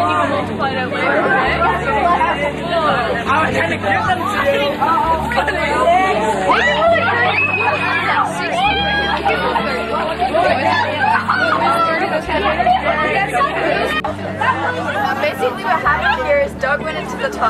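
A group of young people chattering and talking over one another, with no single voice standing out for long; one voice rises higher for a moment about halfway through.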